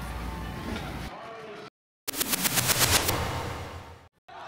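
Background music, cut off by a short dead gap, then a transition sound effect: a rapid rattle of sharp clicks, about ten a second, that fades out.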